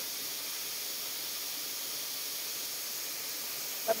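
Waterfall pouring into a rocky pool: a steady, even rush of falling water, mostly a high hiss.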